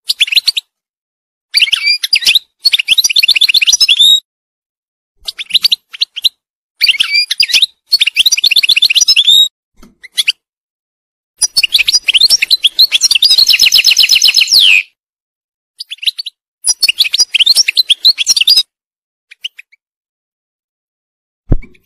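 European goldfinch singing: a run of fast, high twittering phrases with quick trills, broken by short pauses, the longest phrase lasting about three seconds midway.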